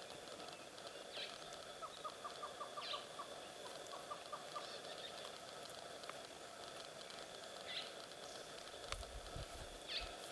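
Faint bush ambience: a bird calling in two quick runs of short, repeated notes over a steady high hum, with a low thump near the end.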